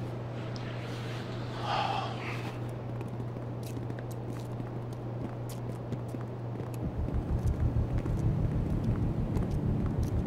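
A steady low drone, joined about seven seconds in by a regular low pulsing throb, like a tense background score, with faint footsteps of a group walking.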